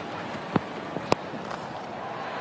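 Steady ground ambience from a cricket broadcast, with two sharp knocks about half a second apart; the louder second one, about a second in, is the bat striking the ball hard.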